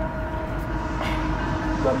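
A steady low mechanical rumble with a constant hum.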